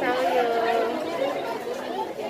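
Speech only: people talking, with the chatter of a crowd behind.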